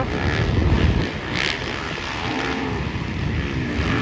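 Motocross dirt bikes racing on the track, their engines revving, louder in the first second and then fainter as they move away.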